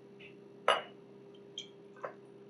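Glass clinks as a glass reagent bottle knocks against a glass measuring cylinder while hydrochloric acid is poured: one sharp clink about a second in, then a fainter one near the end.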